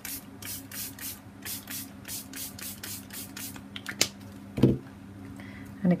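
Small pump spray bottle of homemade food-colouring ink, pumped rapidly: a quick run of short hissing sprays, about three or four a second, for the first three seconds or so. Then a sharp click and a soft knock.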